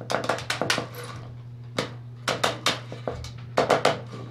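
Tin snips cutting through steel wire mesh: a run of sharp metallic snips in clusters, several quickly in the first second, one on its own, then three in a row, and a quick group near the end.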